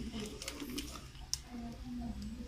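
A few light clicks and rustles of thin electrical wires being handled, with the sharpest click about a second and a half in. Faint voices sound in the background.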